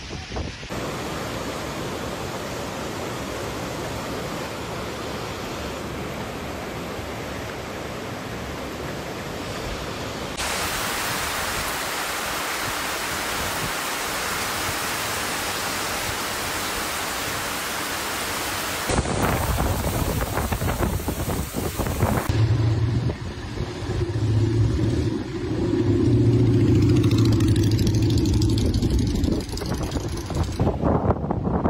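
Steady storm noise from typhoon footage, with heavy rain pouring on trees in the loudest stretch through the middle. After a cut in the last third, a vehicle engine runs with a low, steady hum.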